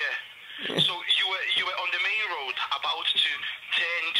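Speech heard over a telephone line, thin and cut off above the middle of the voice's range; the words are not made out.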